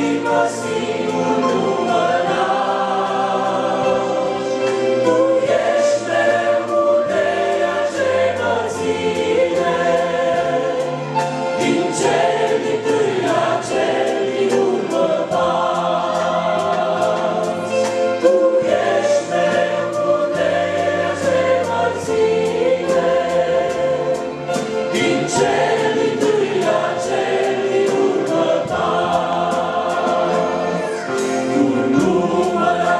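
Men's and women's voices singing a Romanian Christian hymn together through microphones, accompanied by a Korg electronic keyboard playing sustained chords and bass notes.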